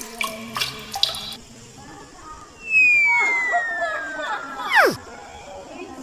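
A loud whistle-like tone sliding down in pitch for about two seconds, then plunging steeply and cutting off. It sounds like a cartoon 'falling' slide-whistle sound effect. Brief clicks and rustles come in the first second or so.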